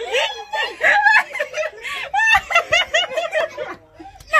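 A woman laughing loudly amid excited voices, with a run of quick, repeated laugh pulses in the second half.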